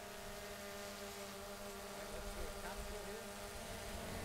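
A multirotor drone hovering, its propellers giving a steady, fairly faint hum of several even tones.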